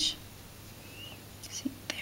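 Quiet room tone with a steady low hum, between a woman's spoken words: her last word trails off at the start, and a faint murmur comes near the end.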